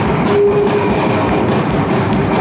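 Live rock band playing loudly: electric guitars, bass guitar and drum kit together, with a steady drum beat under sustained guitar notes.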